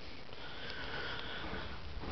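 A faint, steady hiss of breathing close to the microphone, with no distinct events.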